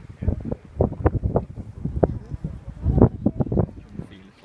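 Wind buffeting a phone's microphone: irregular rumbling gusts, loudest about three seconds in.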